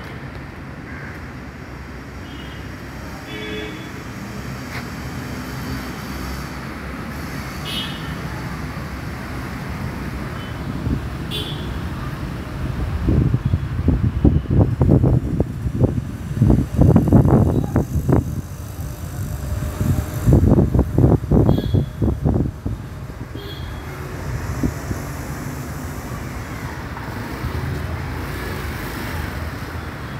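Steady low rumble of road traffic outdoors, with a few short high-pitched chirps. Through the middle come two stretches of loud, irregular low rumbling bursts.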